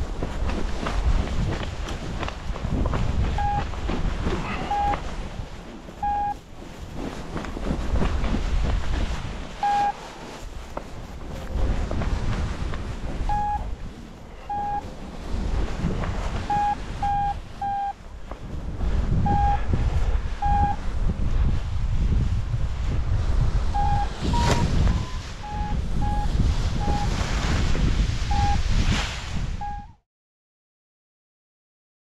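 Wind buffeting the microphone during a paraglider flight, a gusting rumble that rises and falls. Over it a flight variometer gives short, irregularly spaced beeps, a few pitched slightly higher about three-quarters of the way through, a sign of weak lift.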